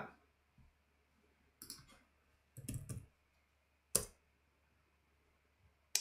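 Computer keyboard keystrokes typing a short word in a few quick strokes, then one sharper single key press about four seconds in, the return key that submits the entry.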